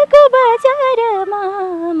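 A woman singing a Nepali song unaccompanied, holding long wavering notes that slide down in pitch.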